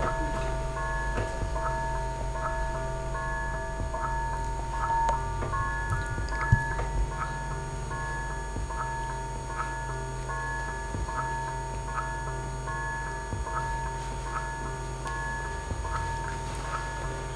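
Electronic sound cue played over the theatre speakers: short high bleeping notes at a few different pitches in a quick, even, clock-like pattern over a held tone and a low steady hum. A single short knock comes about six and a half seconds in.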